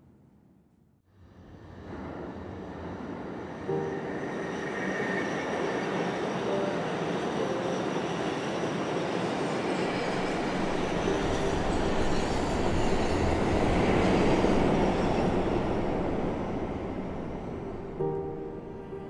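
Elevated train passing on its steel structure. The sound swells from about a second in to its loudest near the end, then eases off, with thin squeals from the wheels along the way.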